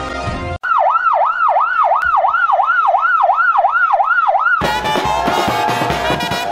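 A siren wailing rapidly up and down, about two and a half sweeps a second, for about four seconds, right after a short theme-music tag ends. Near the end it gives way to a brass band with a bass drum striking.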